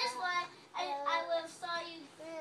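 Young children's high-pitched voices in three short, drawn-out calls, each holding a fairly level pitch.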